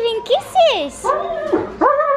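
German shepherd whining and yipping in a run of short, high cries that swoop up and down in pitch.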